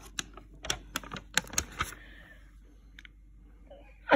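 Quick series of light clicks and taps, about eight in the first two seconds, from a glossy magazine page being handled and turned.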